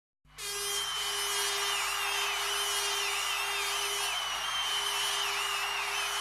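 Opening of an electronic music track: a steady hissing synth texture with a wavering high whistle-like tone over a low sustained drone, starting just after the beginning.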